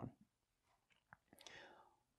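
Near silence: room tone, with a faint click about a second in and a brief soft hiss shortly after.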